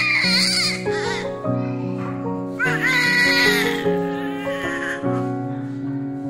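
A newborn baby crying: one wail trailing off about a second in, then a second wail from about two and a half to four seconds in, over background music with held notes.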